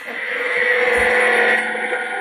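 A talking Hulk action figure's small built-in speaker playing an electronic power-blast sound effect: a loud rushing noise with a steady hum beneath it, swelling and then easing off near the end.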